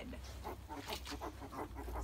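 A sow and her newborn piglets moving about in straw bedding: faint scattered rustling with soft pig grunting.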